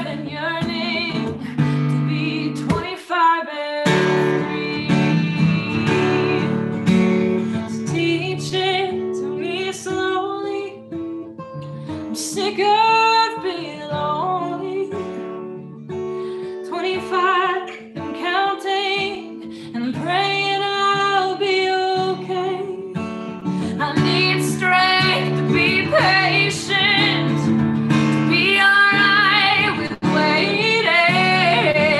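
A woman singing a slow song while accompanying herself on acoustic guitar, in a live solo performance. The guitar drops out for about a second near the start, then carries on under the voice.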